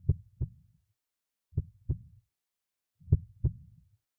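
Heartbeat sound effect: low, paired thumps in a lub-dub rhythm, three pairs about a second and a half apart.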